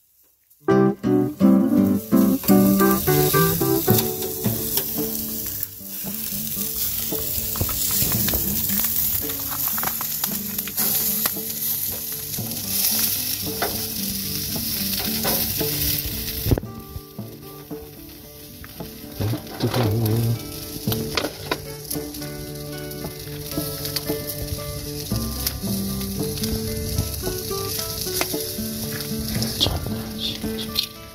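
Marinated chicken sizzling over glowing charcoal on a wire grill, the sizzle strongest in the first half and quieter after about 16 seconds, with background music playing throughout.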